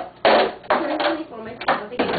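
Plastic party cups clattering on a table as they are handled, with four or five short knocks, amid indistinct voices.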